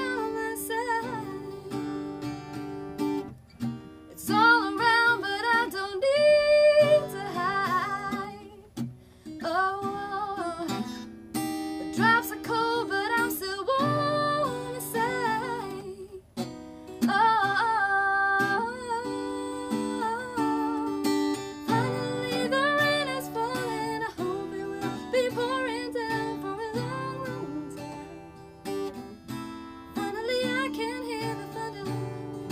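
A woman singing a country-pop song live in phrases, accompanying herself on a strummed acoustic guitar.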